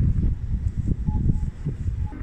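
Low, uneven rumble of wind buffeting the camera's microphone outdoors.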